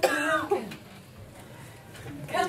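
A short vocal sound from a person in the first half second, with a sharp start, then quiet room tone.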